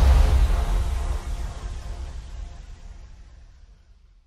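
Logo sting sound effect: a deep boom with a noisy rushing tail and faint held tones, dying away over about four seconds.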